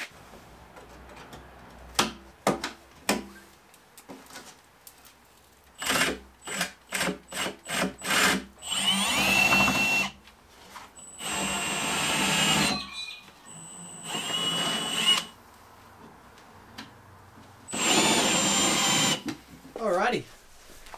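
Cordless drill boring holes into a plastic fuel tank, with a steady high motor whine. A few knocks come about two seconds in, then a string of short trigger blips, then four longer runs of a second or two each.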